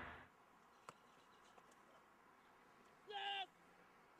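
Near silence with a faint click, then about three seconds in a short pitched tone, steady and bending up at its end.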